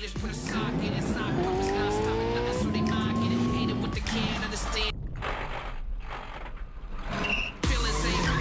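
A Porsche Taycan's electric drivetrain whine rising in pitch as the car accelerates, over music, with tyre squeal as it slides through a corner. About five seconds in the sound turns muffled for a couple of seconds, then comes back full near the end.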